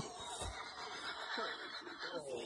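Faint rustling, with a soft thump about half a second in, from someone moving on a boulder while holding the phone.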